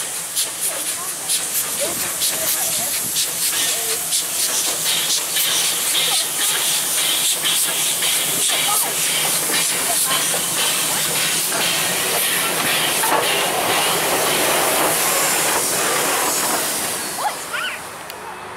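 Polish Slask Class 0-8-0T steam tank locomotive passing close by at slow speed, steam hissing loudly from its cylinder drain cocks, with a scatter of sharp clicks. The hiss grows louder as the engine draws alongside and cuts off suddenly near the end.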